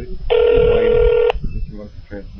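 A telephone line tone heard over a call on hold for transfer: one steady beep about a second long that cuts off with a click.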